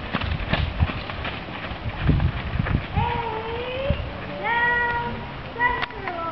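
Horse neighing in three drawn-out calls, the last one falling in pitch, over wind and scattered low thuds.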